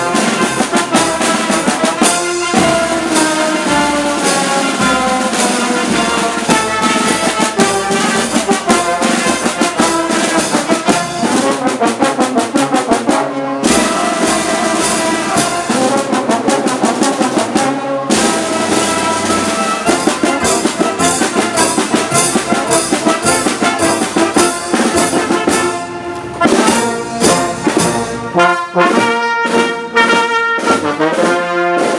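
Marching brass band playing a march, with trumpets, trombones and sousaphones over a drum. The music pauses for an instant a few times between phrases and turns to short, clipped notes near the end.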